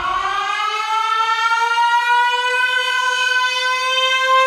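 A siren-like tone, used as a sound effect in the mix's intro. It glides up in pitch over about the first second, then holds almost steady.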